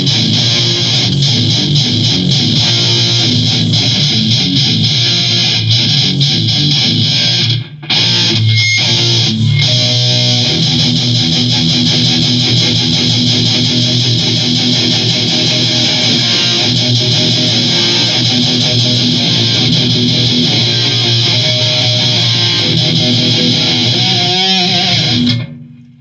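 Epiphone Extura electric guitar played heavy and fast, shredding-style riffs and leads. The playing breaks off briefly about eight seconds in and stops just before the end.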